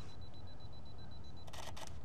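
Canon EOS R6 Mark II mirrorless camera counting down its two-second self-timer with a rapid high beeping. The shutter then fires with a few short clicks about one and a half seconds in.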